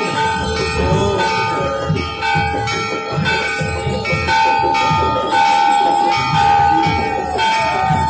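Temple bells ringing continuously during the evening aarti, struck again about once a second, over a quick low beat.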